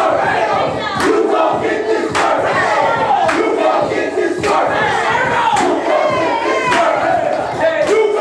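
A group of voices shouting and chanting together over a heavy beat, with a hit about once a second.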